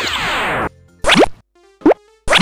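Cartoon transition sound effects over light children's music: a dense falling sweep lasting under a second, then two quick rising blips.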